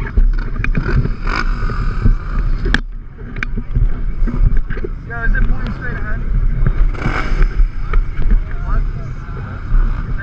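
Side-by-side UTV engines running at idle, a steady rumble, with several sharp knocks from the camera mount being handled and repositioned.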